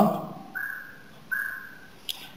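Marker pen squeaking on paper as it is drawn across the sheet: two short, high squeaks about three-quarters of a second apart.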